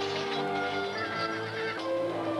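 Thai sarama ring music: a pi java oboe plays a wavering, ornamented melody over sustained accompanying tones.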